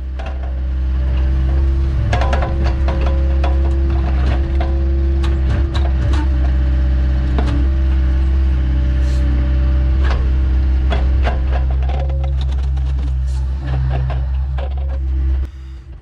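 Excavator engine and hydraulics running steadily, heard from inside the cab, with scattered sharp clicks and knocks as the grapple handles and sets boulders. The hum cuts off suddenly near the end.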